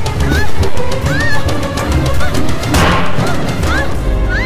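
Horror film soundtrack: fast percussive music with many short, shrill cries that rise and fall in pitch, and a brief whoosh about three seconds in.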